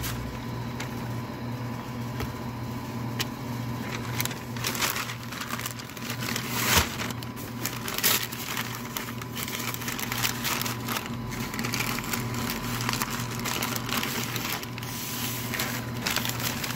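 Butcher paper crinkling and rustling in irregular bursts as it is folded and pressed by hand around a smoked brisket, loudest about seven and eight seconds in, over a steady low hum.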